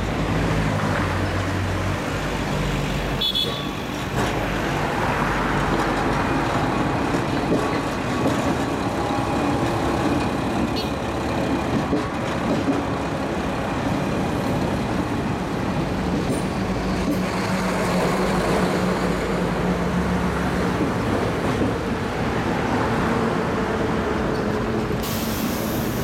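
A diesel railcar, the former Sanriku Railway 36-type, passes close with its engine running; the engine hum drops away after about two seconds. Steady road traffic follows, with cars and trucks going by.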